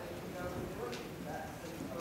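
A horse's hoofbeats on the sand footing of an indoor arena, mixed with a voice speaking indistinctly.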